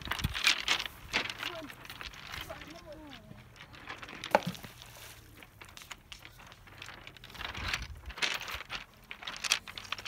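Pebbles and shingle crunching and clattering, with one sharp stone-on-stone knock a little over four seconds in.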